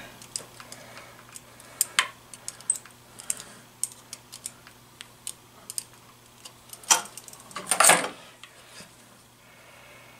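Light, irregular metallic clicks and taps of locking pliers and a small wire connector being worked onto the ignition stator plate of a 1974 Honda XR75 engine, with a sharper click about two seconds in and a louder rattling clatter around seven to eight seconds.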